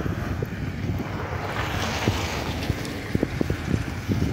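Wind buffeting the microphone outdoors: a steady low rumbling rush, with a few faint ticks in the last second or two.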